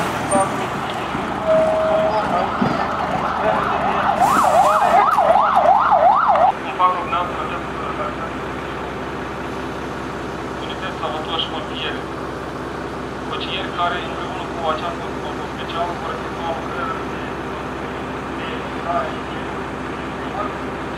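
Fire engine's siren yelping in rapid up-and-down sweeps for about two seconds, after a brief steady tone, and cutting off suddenly about seven seconds in. The Volvo FL6 fire engine's diesel engine then runs steadily at idle.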